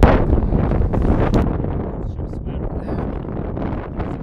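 Strong wind buffeting the camera microphone, a loud low rumble that eases a little about halfway through.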